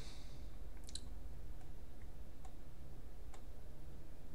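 A few light computer mouse clicks: a quick pair about a second in, then two single clicks further on, over a steady low hum.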